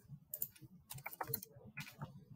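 Computer keyboard keystrokes: a few quick key presses in small clusters as a short search word is typed.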